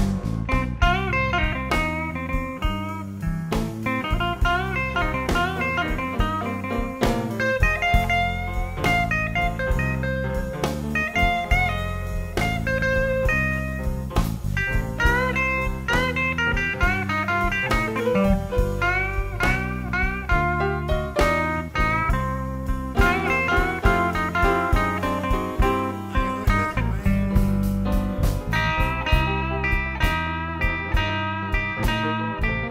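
Blues band instrumental break: a guitar solo of bent notes over piano, bass and drums keeping a steady beat.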